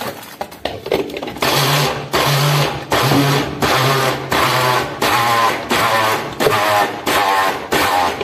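Small electric kitchen blender run in about ten short pulses, its motor whirring for half a second at a time and stopping in quick succession.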